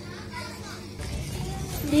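Low background chatter of children's voices. Right at the end, a girl's voice starts chanting a Quran recitation through a microphone and loudspeaker, much louder than the chatter.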